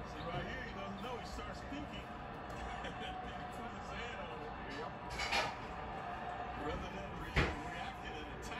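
Televised basketball game heard through a TV speaker: steady arena crowd noise with indistinct voices. There is a brief louder burst about five seconds in and a single sharp knock shortly before the end.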